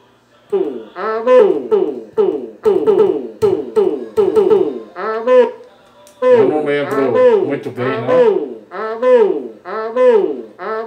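A man's voice processed by a vocal effects pedal: short "alô"-like syllables repeat in quick succession, each falling in pitch, sounding like a sampled phrase being played back over and over. About six seconds in, a second, lower layer joins and the sound thickens.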